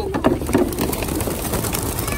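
Many homing pigeons' wings clattering in rapid, dense flapping as a flock takes off together from an opened release crate.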